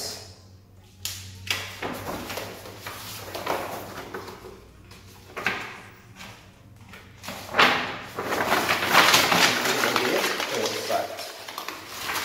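Sheets of paper rustling and being scrunched by hand: short separate crinkles at first, then a longer, denser spell of crumpling near the end.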